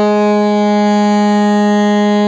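Soprano saxophone holding one long, low note at a steady pitch.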